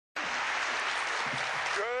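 Audience applauding, a dense even clatter that cuts in abruptly at the start and gives way near the end to a man's voice.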